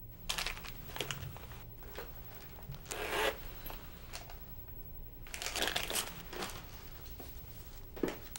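Rustling and crinkling as a handbag is opened and a stiff paper talisman is handled, in three clusters of short bursts.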